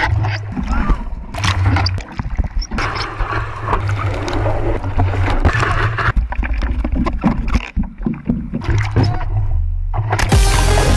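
Water splashing and rushing around an action camera on a surfboard as breaking surf washes over the board, with uneven low buffeting on the microphone.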